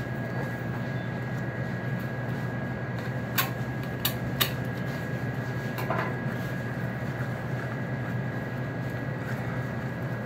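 Steady machine hum with a thin high whine running under everything, and four sharp knocks between about three and six seconds in from knife-and-bone work on a rack of ribs at the cutting table.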